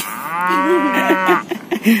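A cow mooing once: a single long, drawn-out moo of about a second and a half that rises and then falls in pitch, with a short tail near the end.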